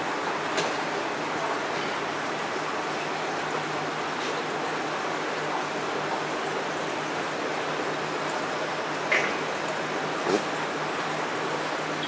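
Steady rushing noise of water circulating through aquarium tanks, with a faint low hum of pumps. A few faint knocks come as the LED light fixture is handled.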